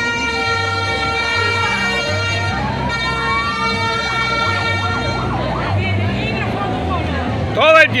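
A siren sounding: a held tone that stops about five seconds in, with a second tone gliding upward partway through. Music with a pulsing bass beat plays underneath, and a voice calls out near the end.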